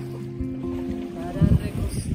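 Acoustic guitar holding and changing chords of a slow zamba between sung lines, over a low, irregular rumble of wind on the microphone that swells loudest about a second and a half in.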